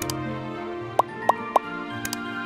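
Background music with three short pops in quick succession about a second in: the click sound effects of an animated like-and-subscribe button.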